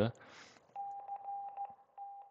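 FX-4CR transceiver's CW sidetone beeping out a stored Morse message (CQ POTA) at one steady pitch, starting about three-quarters of a second in with a short break near the end. A brief soft hiss comes just before it.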